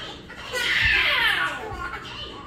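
A child's voice calling out loudly for about a second, its pitch falling.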